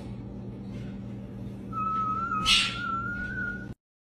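A high, thin whistle-like squeal, rising slightly in pitch, starts about halfway through and holds for about two seconds over a low steady hum. A short breathy hiss comes in the middle, and the sound cuts off abruptly just before the end.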